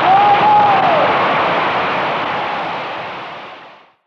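Concert audience applauding at the end of a song, heard on an audience tape recording, with one brief tone rising and falling in the first second. The applause fades out to silence just before the end.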